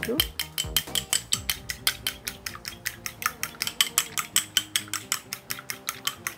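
A fork beating an egg in a small ceramic bowl, its tines clicking rapidly and evenly against the bowl at about eight strokes a second.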